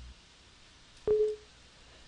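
Windows 7 User Account Control alert sound as the permission prompt pops up: a single short electronic tone, starting suddenly about a second in and dying away within half a second.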